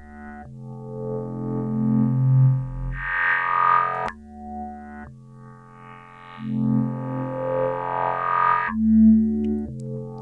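Synth bass from Ableton's Operator played through the Moog MF-105S MuRF filter-bank plugin in bass mode: a few held low notes whose brightness swells and falls twice as the synced animation steps through the fixed filters.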